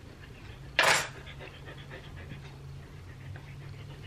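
A husky panting steadily, with a short, loud burst of noise about a second in.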